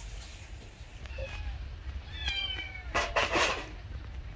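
Black kitten meowing several times: a faint call about a second in, a clearer meow just after two seconds, then a louder, rougher one around three seconds.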